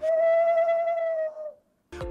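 A single long owl hoot, held at one steady pitch for about a second and a half and dipping slightly as it fades out.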